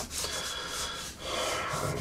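Prismacolor Col-Erase erasable colored pencil scratching across Bristol board in several sketching strokes, with a short pause just past a second in.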